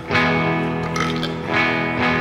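Amplified electric guitar chords struck about three times and left to ring between songs.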